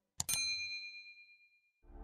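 A bright, bell-like ding: two quick strikes close together, then a clear ringing tone that fades away over about a second and a half. Music comes in near the end.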